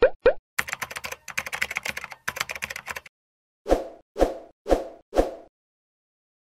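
Cartoon sound effects for an animated intro: two quick rising pops, then a fast clattering run of clicks lasting about two and a half seconds, then four evenly spaced plops about half a second apart.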